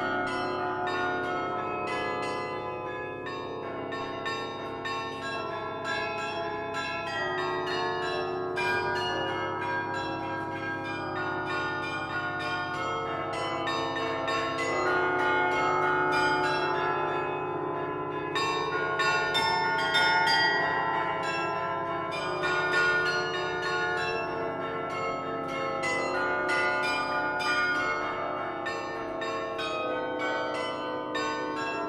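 The restored Hemony carillon's cast bronze bells, played from the baton clavier in a quick, full passage of many overlapping struck notes that keep ringing into one another. It swells slightly louder around the middle.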